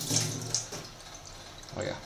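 Water running into a stainless steel sink, stopping within the first second; a short spoken 'oh yeah' near the end.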